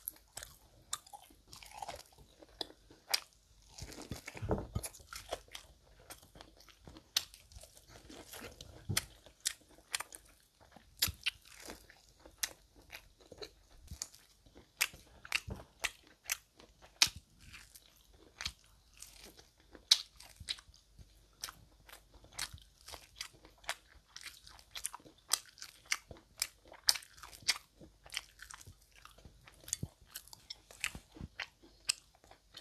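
Close-miked eating: biting and chewing corn on the cob, a steady run of small sharp crunches and wet mouth clicks at an uneven pace, busiest about four seconds in.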